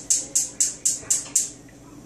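Oven being switched on: a run of evenly spaced sharp clicks, about four a second, that stop about a second and a half in.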